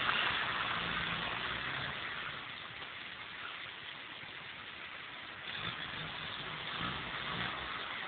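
Suzuki Vitara 4x4's engine running faintly at low revs as it drives down a rough quarry track, under a steady hiss that eases after the first couple of seconds.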